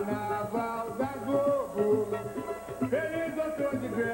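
A pop band's music with singing: a sung melody over a steady bass beat, heard from an old home videotape recording.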